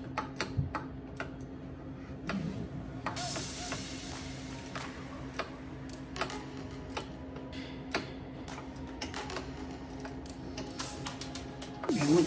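Irregular light clicks and taps of a hand tool working a metal fitting, over quiet background music with a steady hum.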